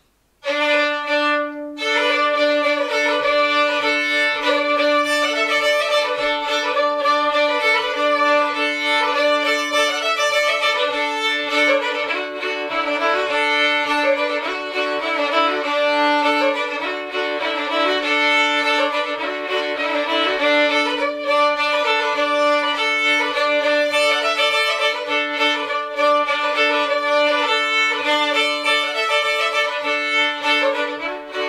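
Old-time fiddle tune played with a steady drone on a lower string held under the melody. It starts about half a second in, with a short break just before two seconds.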